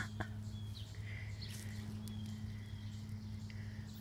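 Quiet outdoor garden ambience: a few faint, short bird chirps over a steady low hum.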